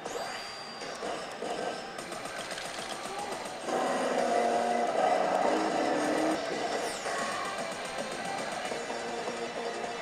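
Initial D pachislot machine playing its battle-sequence music and electronic effects, which step up in loudness about four seconds in, with a quick sweep high in pitch a few seconds later.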